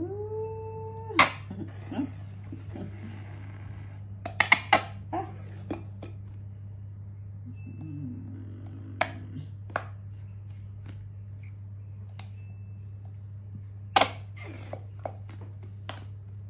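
Plastic squeeze bottle of mayonnaise being squeezed and shaken over a bowl of salad: scattered sharp clicks and sputtering squirts, loudest about four and a half seconds in and again near the end. A short high whine in the first second, and a steady low hum throughout.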